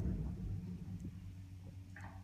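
Low, steady hum of a 1960 Haughton hydraulic elevator running, heard inside its cab, with a few faint clicks.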